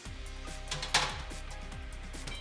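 Background music, with a single sharp knock about a second in as a metal baking tray goes onto a fridge shelf.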